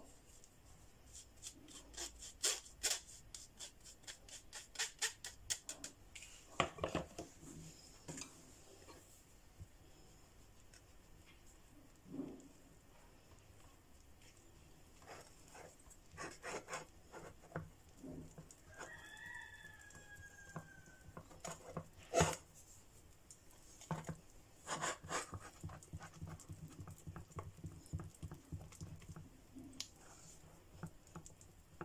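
Metal spoon tapping and scraping cocoa powder through a plastic mesh sieve in a quick run of light taps, then a silicone spatula stirring the cocoa into cake batter in a ceramic bowl, with scattered clicks and soft scraping. A brief high falling squeak sounds about two-thirds through, followed by one sharp click.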